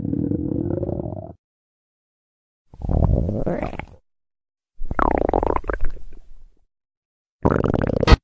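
Stomach growling sound effect: four separate rumbles, each one to two seconds long with silence between, one rising in pitch near its end. It is the growl of a hungry, empty stomach.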